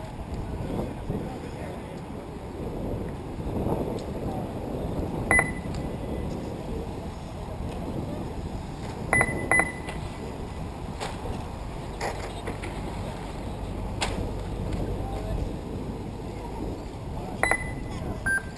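Short electronic beeps from an RC race lap-timing system over steady outdoor noise. The beeps come at about five seconds in, twice in quick succession around nine seconds, and once more near the end, each marking a transponder-equipped car crossing the timing line.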